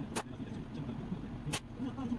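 Two slingshot shots at a cardboard box target stuffed with denim, each a sharp crack, about a second and a half apart, over a steady low hum.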